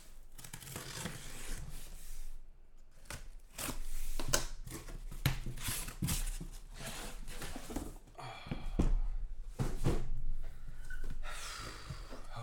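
Plastic shrink wrap and packing tape on a cardboard shipping case being slit and torn open, crinkling, with the cardboard flaps scraping and knocking a few times as the box is opened.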